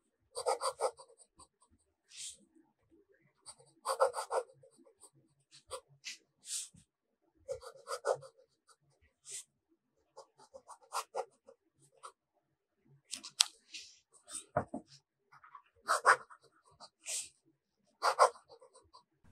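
Fountain pen nib writing on paper: short, irregular scratching strokes every second or so as words are written.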